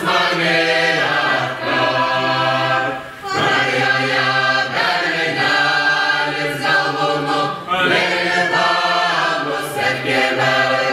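Mixed choir of men's and women's voices singing a Lithuanian folk song a cappella, in long held phrases over a steady low part. The phrases break for a short breath twice, about three seconds in and again near eight seconds.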